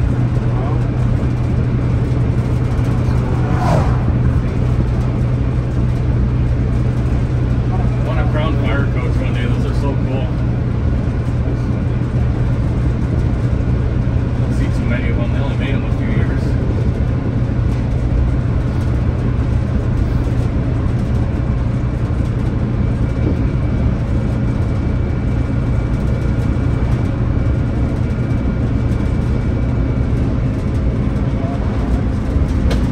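Naturally aspirated Detroit Diesel 6-71 two-stroke inline-six in a 1978 Crown school bus, heard from inside the cabin, running at a steady speed while the bus cruises on the highway. The drone holds one even pitch throughout, with no revving or shifting.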